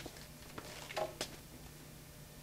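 A few faint taps and clicks as a phone is picked up off a wooden table, over a low steady hum.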